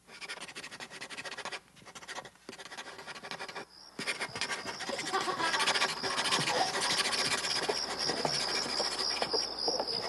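Chirring insects in an animated film's countryside soundtrack, played over a hall's speakers. The sound starts abruptly and is broken by short gaps at first; from about four seconds in it turns into a steadier, louder high pulsing chirr.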